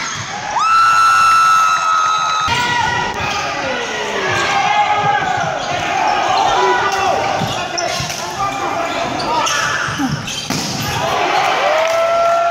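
Indoor volleyball rally in a large gym hall: a ball struck hard at the net, then a referee's whistle held for about two seconds. Players shout and call over ball hits, and another long held tone sounds near the end.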